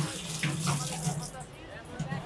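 Water running steadily, as from a tap.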